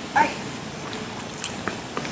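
A dog gives one short, high yelp just after the start, followed by a couple of faint clicks.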